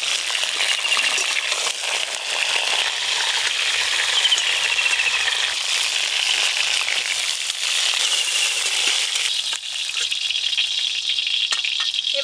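Whole pointed gourds (potol) sizzling as they fry in hot oil in a steel wok, with occasional clinks of a steel spatula against the wok and plate as they are turned and lifted out. The sizzle thins near the end.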